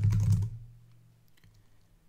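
Typing on a computer keyboard to enter a terminal command: a brief low-pitched sound at the very start, then a few faint key clicks about a second and a half in.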